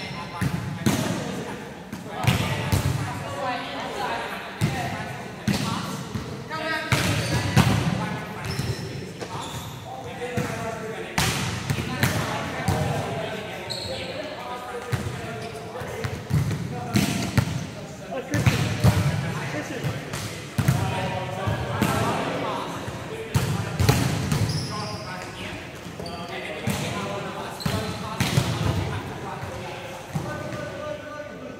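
Volleyballs being struck and slapping on the court floor again and again in a large indoor hall, with players' voices calling out indistinctly between the hits.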